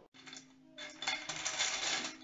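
Small plastic Lego pieces clattering against a stainless steel bowl as a hand rummages through them, the rattling starting about a second in.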